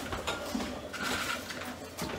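Faint, light handling sounds of dry homemade croutons being picked off a tray and dropped into a bowl of soup.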